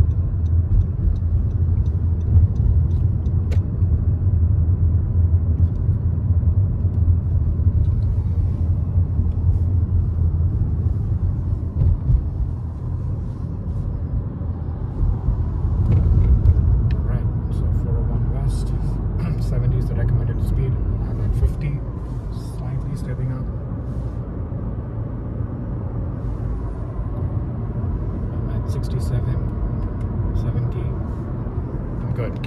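Steady low road rumble of a Honda car's tyres and engine heard from inside the cabin while driving, easing a little partway through and swelling again, with a few faint clicks near the end.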